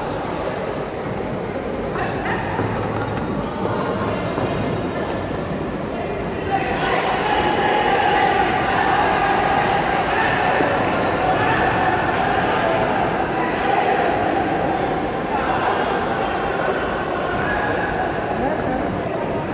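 Voices of spectators in a large echoing sports hall: a mix of talking and shouting that grows louder about six and a half seconds in.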